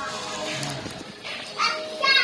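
A young child's short, high-pitched vocal squeal a little past the middle, over steady background music.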